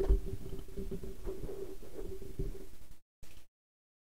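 Handling noise on a condenser microphone on a boom arm as it is moved up: a loud low thump at the start, then low bumps and rubbing over a faint steady tone. The sound cuts out to silence about three seconds in.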